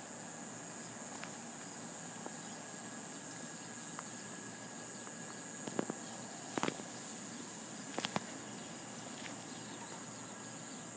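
Faint steady high-pitched hiss in the background, with a few soft clicks about six and eight seconds in.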